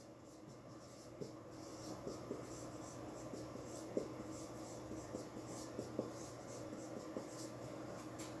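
Marker pen writing on a whiteboard: faint squeaks and taps of the tip as letters are drawn, over a low room hum.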